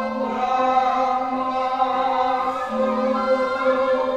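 Surakarta court gamelan music for the bedhaya dance, with a chorus of voices singing long held notes in unison that move slowly from pitch to pitch.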